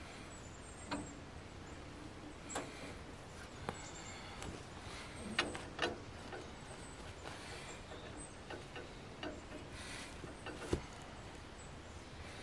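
Faint handling sounds at a tractor's three-point hitch: scattered light clicks, knocks and rustles, with footsteps on dry pine straw, and one sharper click near the end.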